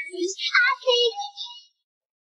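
A high singing voice, the tail of a sung line, breaking off about a second and a half in.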